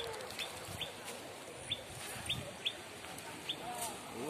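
A small bird chirping repeatedly: about eight short, high notes, each falling slightly in pitch, at irregular intervals.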